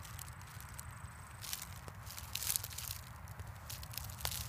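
Faint rustling and crackling of dry grass and leaves in short scattered bursts, over a low steady rumble.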